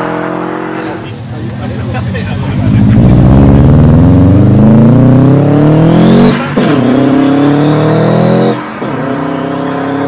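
Subaru Impreza's flat-four engine revving up hard under full acceleration, its pitch climbing steadily. There are two quick upshifts, a little past six seconds in and again near nine seconds, each dropping the revs before they climb again.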